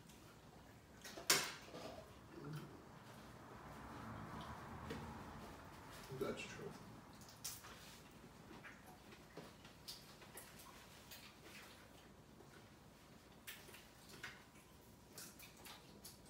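Cutlery and dishes clinking lightly at a dinner table, scattered sharp clicks with the loudest about a second in, under faint murmured voices.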